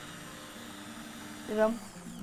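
Immersion (stick) blender running steadily down in a pot of soup, puréeing it, with an even motor hum.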